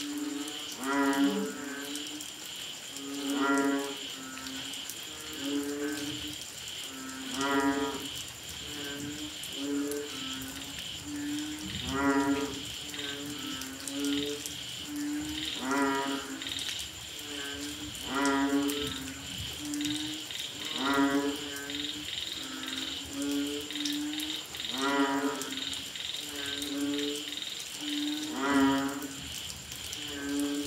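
A chorus of banded bullfrogs (Asian painted frogs) calling: low calls repeat over and over, the loudest every two to four seconds, with fainter frogs answering in between. A steady, high-pitched pulsing trill runs underneath.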